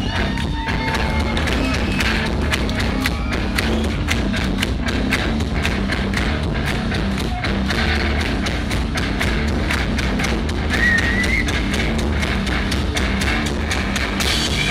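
Live heavy rock band playing loud: electric guitar, bass guitar and a drum kit, with steady, fast drum hits. A brief high rising note sounds about eleven seconds in.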